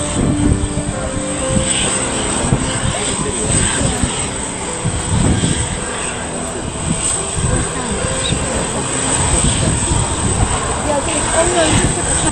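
Jet engines of a British Airways Boeing 747-400 running at low power as it taxis, a steady rumble and whine, with indistinct voices of onlookers over it.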